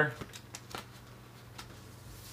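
Faint handling noise of a cardboard LP record jacket being held and turned over: a few light ticks and rustles over a low steady hum.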